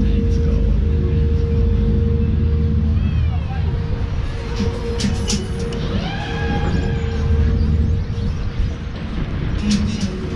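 A fairground ride in motion, heard from on board: a continuous low rumble and a steady hum, with the ride's jingles playing over it as sweeping tones about three seconds in and again around six to seven seconds.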